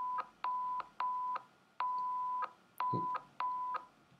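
Test-tone beeps from an audio-sync test video playing back: six short beeps at one steady pitch, most about half a second long and the fourth somewhat longer, each starting and stopping with a click.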